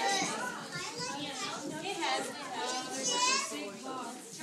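Many young children chattering and talking over one another at a shared meal, with one high-pitched voice standing out about three seconds in.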